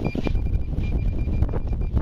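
Wind buffeting the microphone: a loud, uneven low rumble, with a faint thin high-pitched tone running underneath.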